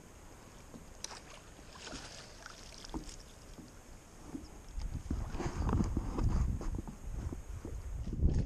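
Faint water and handling sounds from a small fishing boat, with a few light clicks, growing into a louder low rumble about five seconds in.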